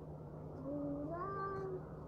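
A single drawn-out vocal call, held on one pitch and then gliding up to a higher held note about a second in, over a steady low hum.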